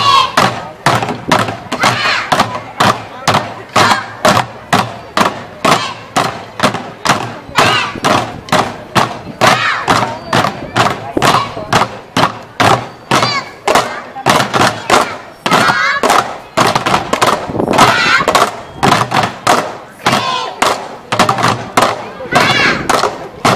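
Children's drumline beating sticks on upturned plastic bucket drums in a steady unison beat, about two to three strikes a second. Voices shouting along can be heard between the strikes.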